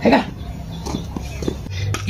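A few brief animal calls, short yelps about a second in, following a loud voice-like sound at the very start.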